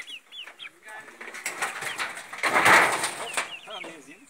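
Chickens calling with short, falling notes, and a loud burst of rustling noise about two and a half seconds in.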